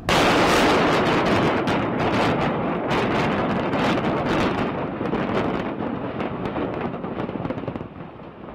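Explosive demolition of concrete buildings: a sudden loud blast, then a rapid string of sharp cracks from the charges over a continuous rumble as the structures come down. The cracks thin out after about five seconds and the rumble eases slightly toward the end.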